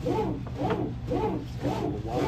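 Bizerba GSP HD automatic meat slicer running in automatic mode. The carriage slides back and forth on its own at a raised speed, each stroke a rising-then-falling rubbing whir, about two a second, over the steady low hum of the motor and spinning blade.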